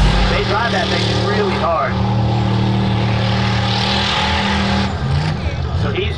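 Off-road freestyle truck's engine held at high revs as it spins donuts in loose dirt, a steady note that shifts in pitch about five seconds in, with voices shouting over it early on.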